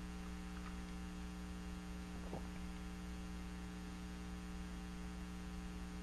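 Steady electrical mains hum with a ladder of evenly spaced overtones, and one faint tick a little past two seconds in.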